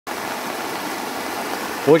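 Swollen river in flood, its fast brown water rushing with a steady, even noise.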